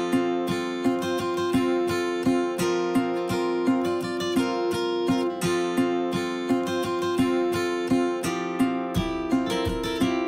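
Background music: an acoustic guitar strummed in a steady rhythm, about three strums a second.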